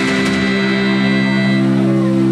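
A live band's closing chord held as a steady drone of several sustained tones after the song's last beat, its upper notes dying away a little past halfway.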